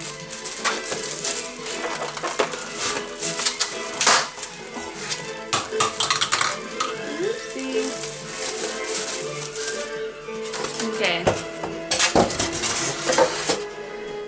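Knocks, clinks and clatter of a waffle maker and its parts being handled and lifted out of plastic wrapping, irregular throughout. Background music plays underneath.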